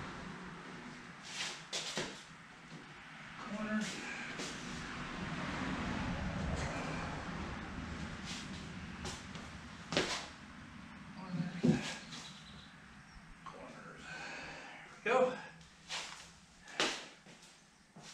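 Plywood sheet being shifted and knocked into line on a 2x4 wooden frame on a concrete floor: irregular wooden knocks and scrapes, with a cluster of sharper knocks near the end.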